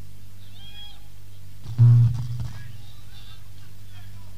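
A pause in a live cassette recording of a band: a steady mains hum with tape hiss, and faint voices in the background. About two seconds in, a single low plucked note rings briefly and is the loudest sound.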